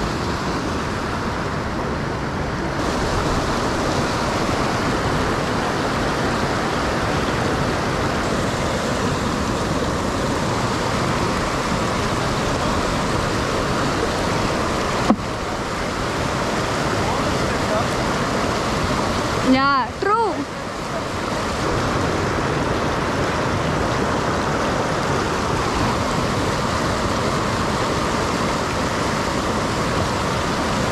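Fast mountain stream rushing over boulders, a steady loud rush of whitewater. About halfway through there is a single sharp click, and a few seconds later a brief wavering pitched sound.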